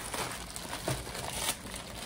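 Packaging crinkling and rustling as it is handled and unwrapped, with small irregular crackles.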